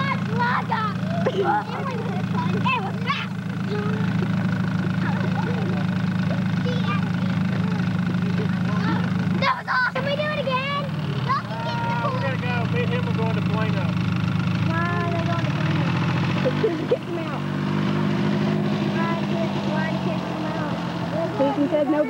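Utility ATV engine running steadily, its pitch shifting about three-quarters of the way through as the quad pulls away, with children's voices and shouts over it.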